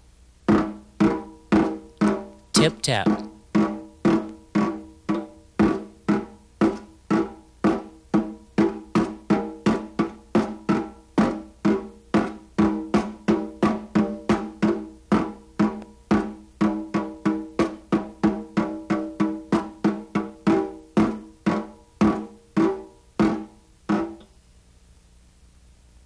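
Wire brush tapped tip-first on a snare drum head (the "tip tap" brush stroke): an even, steady run of short ringing taps, about two and a half a second.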